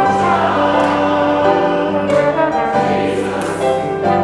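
Trombone and grand piano playing a hymn arrangement together, with sustained, overlapping notes.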